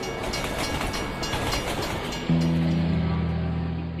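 Rushing, clattering noise of a train passing over, then about two seconds in a low, steady music drone comes in and holds.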